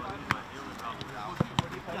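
A football being struck by heads and feet in head tennis: several sharp thuds, two close together near the end, with players' voices in the background.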